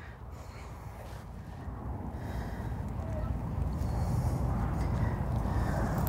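Wind buffeting the microphone in open country: a low rushing rumble that builds steadily louder over the few seconds.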